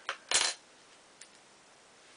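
A single short clink of a small hard object, as when a makeup item is set down or knocked, about a third of a second in, followed by a faint tick about a second later.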